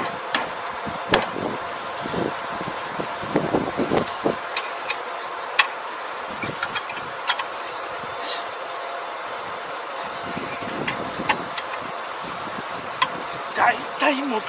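Scattered metal clicks and taps, with a few duller knocks about three to four seconds in, as hands work on a damaged crop lifter at the front of a Kubota ER470 combine's header, over a steady mechanical hum.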